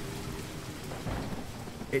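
Heavy rain sound effect, an even, steady downpour, with a low rumble of thunder about a second in.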